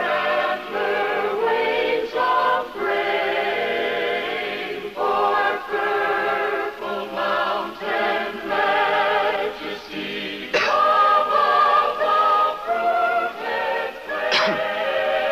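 A mixed choir of men's and women's voices singing with vibrato. From about ten and a half seconds in, one high note is held above the rest for about two seconds.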